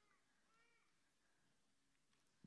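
Near silence: faint room tone, with a faint, short high-pitched call about half a second in.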